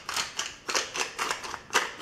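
Wooden pepper mill twisted by hand, grinding peppercorns in a quick series of rasping clicks, several a second.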